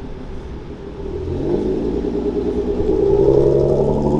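A 2015 Infiniti Q50's engine accelerating as the car drives off. The engine note climbs and grows louder from about a second in.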